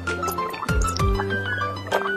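Background electronic music with steady held notes and deep bass notes that drop in pitch, over wet sipping and slurping of a drink from a glass.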